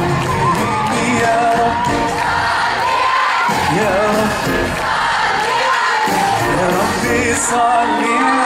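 A live pop performance: a male lead singer sings into a microphone over a live band with drums and guitar, heard from within the audience.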